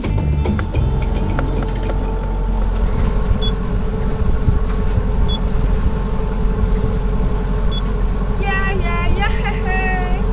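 Steady low engine rumble with a steady hum, over which three short, high electronic beeps sound a few seconds apart, typical of a tiller autopilot's keypad being pressed as the freshly repaired autopilot is set. A voice comes in near the end.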